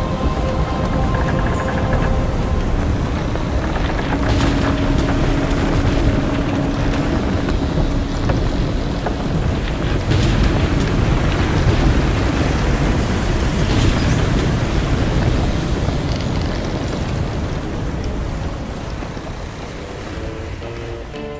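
Sound effects from a Halloween pirate display's soundtrack: a loud, dense rumble with hiss. The music fades out in the first couple of seconds, and a few sharp cracks come through about 4, 10 and 14 seconds in.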